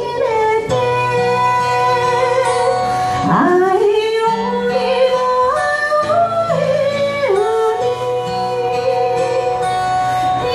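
Live band music: a woman sings long held notes that slide and step between pitches, over a steady accompaniment of acoustic guitar.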